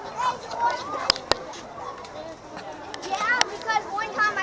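Children's voices calling and chattering in the background without clear words, with two sharp clicks a little over a second in.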